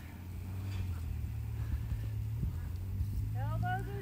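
Horse trotting on sand arena footing, its hoofbeats faint soft thuds under a steady low hum.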